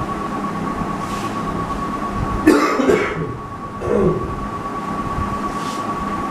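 A man coughs once about two and a half seconds in, with a shorter throat sound about a second later, over a steady room hum and a constant thin high-pitched tone.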